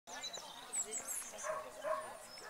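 A dog barking.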